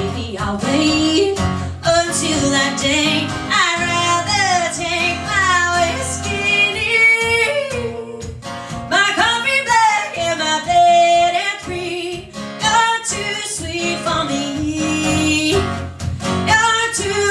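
A woman singing over an acoustic guitar accompaniment, with her voice out front.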